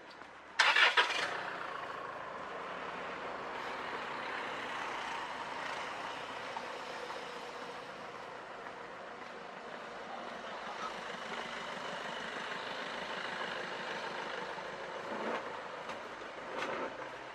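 A vehicle engine starting with a brief loud burst about half a second in, then running steadily.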